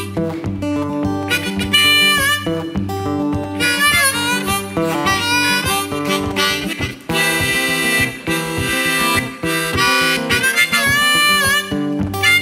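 Blues harmonica playing an instrumental break with bent, wailing notes over a strummed acoustic guitar accompaniment.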